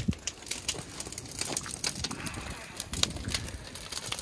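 Burning camper-trailer wreckage crackling, with irregular snaps and pops over a faint background hiss.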